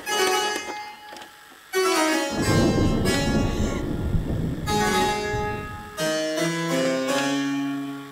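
A harpsichord being played. After a few scattered notes it breaks into dense, fast playing heavy in the low register, then ends on slower stepped notes.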